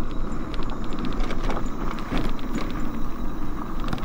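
Riding noise on a cracked concrete road: a steady rumble of wind on the microphone and tyres on the pavement, with a quick run of light clicks about half a second to a second and a half in.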